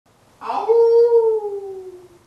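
A dog howling: one long howl that starts about half a second in and slowly falls in pitch.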